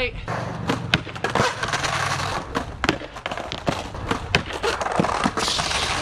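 Skateboard wheels rolling on concrete, with repeated sharp clacks and knocks of the board striking the ramp and coping, and a louder rushing scrape near the end.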